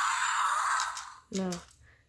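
Fingerlings Untamed T-Rex toy playing a breathy, hissing growl through its small speaker, which fades out about a second in. It is not yet the roar attack, which needs the back of its head held down.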